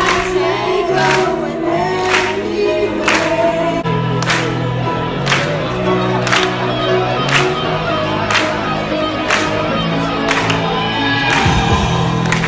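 A woman singing live into a microphone over amplified music, with a steady beat about once a second.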